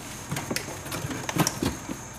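Handling noise from a cardboard box and packaged meat being rummaged through in a refrigerator: a run of irregular clicks, crinkles and rustles.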